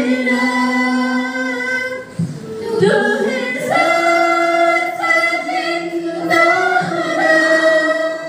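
A youth choir of mixed voices singing a Hindi Christian worship song without instruments, with one female voice leading on a microphone. The notes are held in long phrases, with a brief pause for breath about two seconds in.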